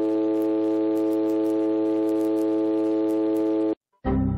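A steady electronic tone of several pitches held together, with a faint rapid crackle above it. It cuts off suddenly near the end.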